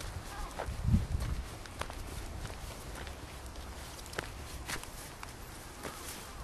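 Footsteps of a person walking on a paved path, irregular light steps. A louder low thump about a second in.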